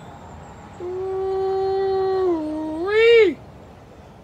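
A long, drawn-out howling cry starting about a second in. It holds one pitch, dips a little, then rises and breaks off about three seconds in.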